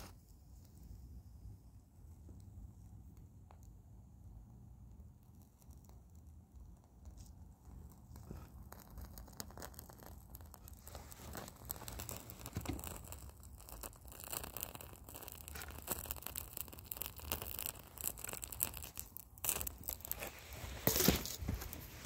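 Quiet at first. From about eight seconds in there is faint crackling and rustling as a lit wooden match burns against a wax-soaked cheesecloth firestarter. The crackles grow louder near the end.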